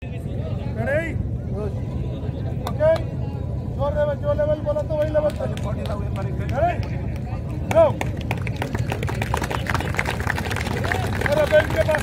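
Motorcycle engine running steadily at idle, under the chatter and scattered calls of a crowd.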